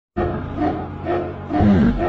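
Music that cuts in abruptly, with a steady low bass and a deep, growl-like pitched sound that swells about every half second.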